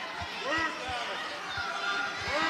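Arena sound during ground grappling in an MMA cage: a scatter of short dull thuds, with faint shouting voices from the crowd and corners about half a second in and again near the end.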